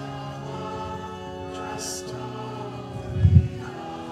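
Congregation singing a hymn to pipe-organ-style electronic organ accompaniment, in steady sustained chords. A short low thump sounds about three seconds in.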